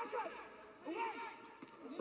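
Quiet male commentary voice, a few faint words in a short lull between louder phrases, over a faint steady background hiss.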